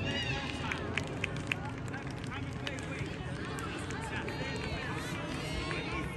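Indistinct voices of children and adults calling across an outdoor soccer field, over a steady low outdoor rumble. Two sharp knocks stand out about a second and a second and a half in.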